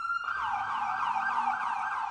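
Police siren on a sheriff's Ford Crown Victoria: a rising wail that switches about a quarter second in to a fast yelp of rapid, repeating up-and-down sweeps.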